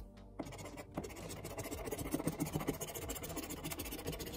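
A coin-sized token scraping the coating off a paper scratch-off lottery ticket in rapid back-and-forth strokes, starting about half a second in.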